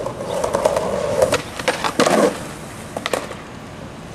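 Skateboard wheels rolling on a concrete path, then a run of sharp clacks of the board on the ground a little over a second in, a brief roll, and one more clack about three seconds in.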